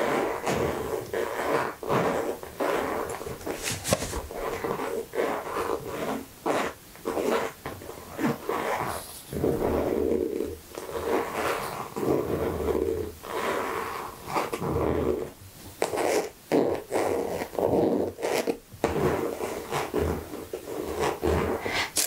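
Fingernails scratching, rubbing and tapping on the wipe-clean surface of a makeup bag: a continuous run of irregular short scratches and taps.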